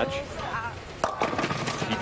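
Bowling ball hitting the pins about a second in, with the pins clattering and knocking into each other after a sharp first crack. The hit is an eight count, pulled left of the pocket, leaving two pins standing.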